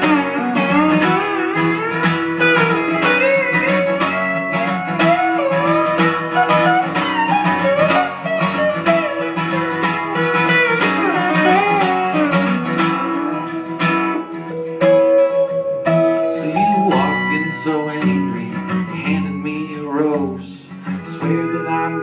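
Instrumental break of a country-folk song: an acoustic guitar strums steady chords while a Multi-Kord steel guitar plays a sliding lead melody, its notes bending and gliding in pitch.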